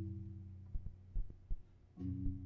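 Bass clarinet and marimba in a quiet, low passage: a low held note fades slowly, three soft low thuds follow about a second in, and a new low note comes in at the end.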